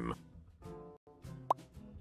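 Soft background music, with a single short rising pop sound effect about one and a half seconds in.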